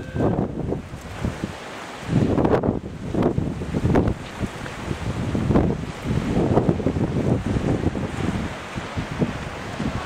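Wind blowing on the camera's microphone, coming in irregular gusts of low rushing noise.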